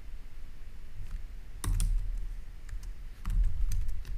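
Typing on a computer keyboard: scattered key clicks with dull thuds, in two denser flurries of keystrokes about halfway through and near the end.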